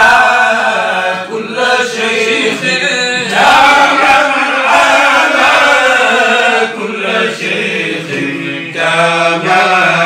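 Men's voices chanting a religious prayer recitation, loud and continuous, with several voices overlapping in held, melodic lines.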